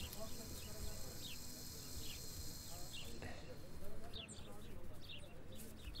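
Small birds chirping: short, quick, high chirps repeated every half second or so, growing more frequent about four seconds in.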